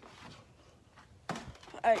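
A low hush, then a single short knock about a second and a half in. A voice says "Alright" near the end.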